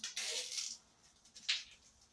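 A wallet's thin foil lining being torn and pulled out by hand: a papery rustle for about half a second, then a short sharp crinkle about a second and a half in.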